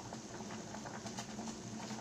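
Water boiling in a stainless steel pot, a faint steady bubbling with fine irregular crackles.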